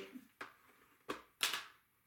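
Three short, sharp scrapes and taps as a plastic bone folder is handled and rubbed against the paper-covered edge of a cardboard book. The last, about a second and a half in, is the loudest.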